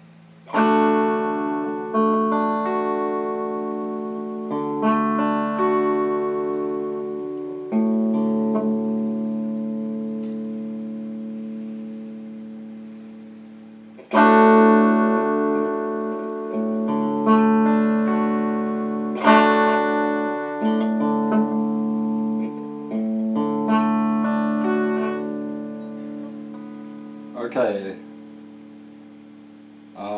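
Electric guitar chords strummed slowly, each left to ring out for a few seconds before the change to the next chord: a beginner's chord-change practice.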